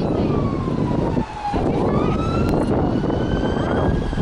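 Wind buffeting the microphone, with a siren wailing in the distance: one long tone that slides down in pitch over the first second and a half, drops out briefly, then slowly climbs again.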